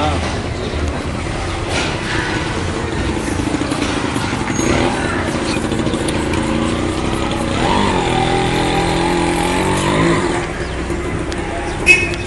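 Outdoor street noise: people's voices over the running of motor vehicles, with a steady engine-like drone that rises and holds for about two and a half seconds in the second half.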